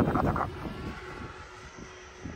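Freewing F7F Tigercat RC model plane's twin electric motors and propellers buzzing as it flies past, with gusty wind noise on the microphone. The sound is loudest in the first half second, then drops to a fainter, steady drone as the plane moves away.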